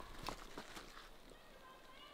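Faint footsteps of a hiker walking on a forest trail, a few soft steps about half a second apart.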